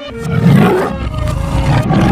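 A big cat's roar, a cartoon sound effect, loudest about half a second in, with a second roar near the end.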